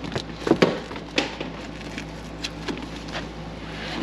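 Hands working a fitted seat cover over a car's rear seatback: scattered rustles and sharp clicks, the loudest about half a second and a second in, over a steady low hum.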